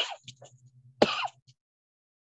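A short throat clear about a second in, over a faint low hum, after which the audio of the video call cuts off abruptly to dead silence.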